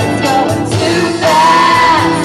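Live pop performance: a group of female singers singing together over a live band of keyboards, drums, percussion, guitar and bass. In the second half, the voices hold one long note.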